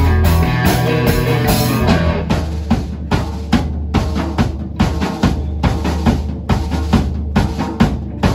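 Live blues-rock band playing instrumentally on electric guitars, bass guitar and drum kit. About two seconds in, the sustained guitar chords fall back and the drum kit and bass carry a steady beat.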